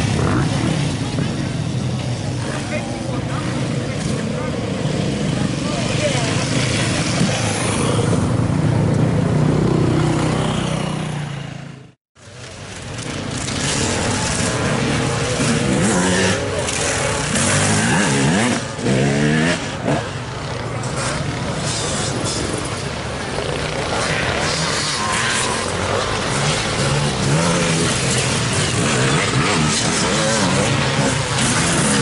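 Off-road enduro motorcycle engines running and revving, with voices among them. About twelve seconds in the sound cuts out abruptly, then comes back with bike engines revving up and down, rising and falling in pitch.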